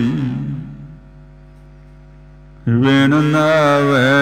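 Melodic chanted recitation of the Sikh Hukamnama, a single voice with wavering held notes. The line dies away about a second in, leaving a faint steady hum. The chant starts again abruptly at about two and a half seconds in.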